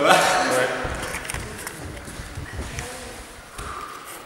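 Men's voices echoing in a large gym hall: a loud call at the start, then quieter talk, with a few light knocks.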